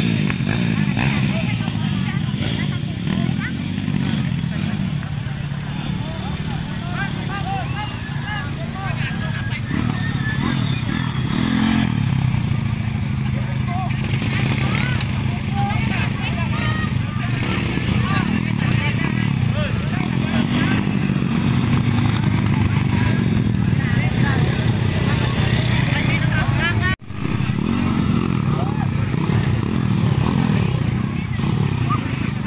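Dirt-bike engines running and revving up and down as off-road motorcycles ride through, with many spectators talking and calling out over them. The sound breaks off for a split second near the end.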